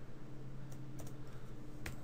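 Computer keyboard keystrokes: a few light, separate clicks, the sharpest one near the end.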